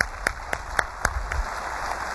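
Audience applause: one close, loud clapper keeps an even beat of about four claps a second, fading out about a second and a half in, while the room's clapping carries on as a steady patter.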